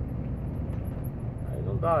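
Steady low rumble of a tractor-trailer's engine and tyre noise heard from inside the cab while cruising on the highway.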